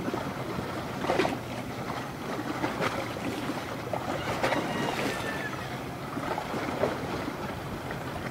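Choppy river water splashing and slapping under a steady rush of wind and water, with several sharper splashes, the first about a second in.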